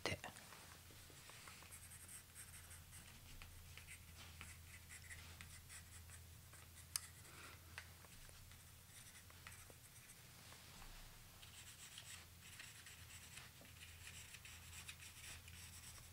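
Pencil drawing on a paper card: faint scratching strokes in short runs, with a single sharp click about seven seconds in, over a steady low hum.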